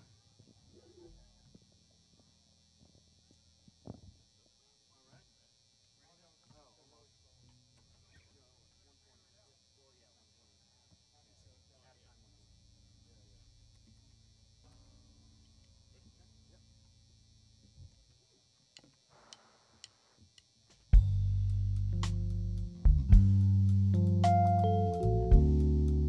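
Near silence with faint small clicks and a low hum for about twenty seconds, then a live band starts a slow ballad suddenly about 21 seconds in, with loud sustained low bass notes and a few higher keyboard notes.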